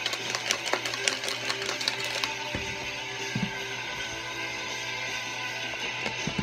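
A small clear plastic container shaken by hand, its contents rattling in a rapid clatter for the first two seconds or so, over background music with guitar that runs on after the shaking stops.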